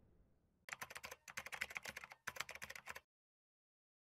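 Computer keyboard typing sound effect: three quick runs of key clicks, stopping about three seconds in.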